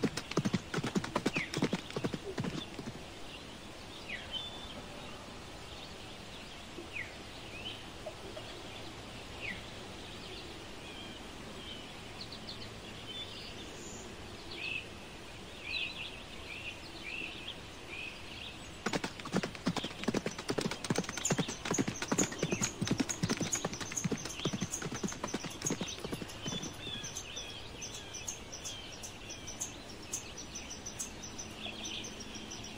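Horse hooves galloping: a short run of hoofbeats at the start, then, about two-thirds of the way in, a longer and denser stretch of many hooves from a running herd. Birds chirp throughout.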